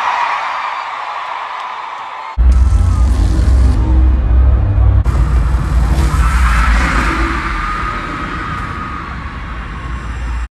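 Arena concert crowd screaming, then about two seconds in loud live music with a heavy, deep bass comes in suddenly over the arena sound system, and the crowd's screaming swells over it.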